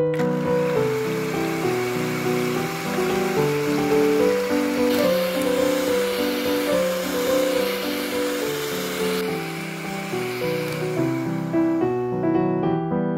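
Electric hand mixer running with its twin beaters whisking eggs in a glass bowl, a steady whir and hiss that starts suddenly, grows brighter about halfway through, then eases off and stops near the end. Piano music plays underneath.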